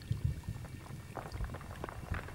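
Water bubbling and gurgling, with irregular low blurps and scattered small pops and clicks. It is part of an ambient electronic piece built from field recordings of snow, ice and water.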